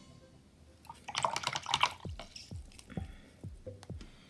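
Water swished briefly with a short splash about a second in, then a run of water drops plinking about twice a second, as from a wet watercolor brush over a water cup.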